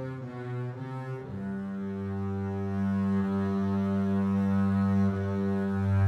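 Sampled orchestral double bass (Embertone's Leonid Bass), played from a keyboard in ensemble mode as a section of bowed basses with legato transitions. A note changes just after a second in, then one long low note is held.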